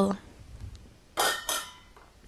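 A glass jar of morello cherries being handled on a kitchen counter: two short scraping noises, one right after the other, a little over a second in.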